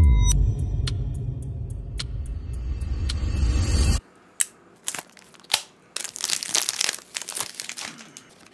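A short channel intro sting: a falling sweep into a deep rumbling bass with high ticks, cutting off suddenly about four seconds in. Then a few sharp clicks and a rustle of cardboard and paper as a fragrance box is handled.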